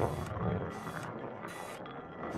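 Mechanical sound effect of a machine running: dense, rapid clicking and whirring, with short bursts of hiss about once a second.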